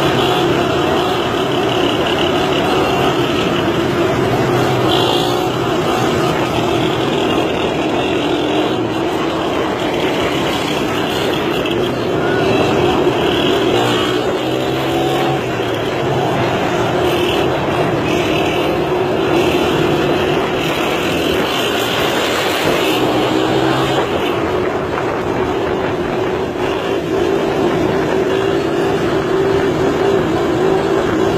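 Small motorcycle engines running steadily at road speed during wheelies. The engine pitch rises and falls slightly as the throttle is held and eased.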